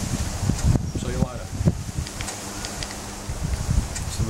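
Wind buffeting the microphone in irregular low gusts, with a short voice sound about a second in.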